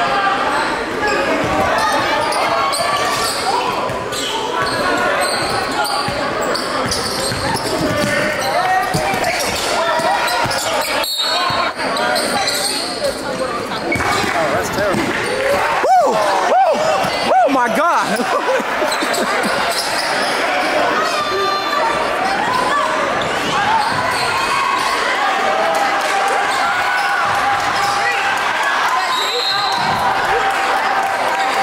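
Live sound of a basketball game in a gymnasium: voices in the crowd, a ball bouncing on the hardwood floor, and the echo of the hall, with a louder stretch about halfway through.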